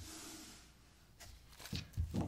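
Faint rustle of a tarot card being slid onto a tabletop, fading within about half a second, then soft handling of the deck with a few light clicks.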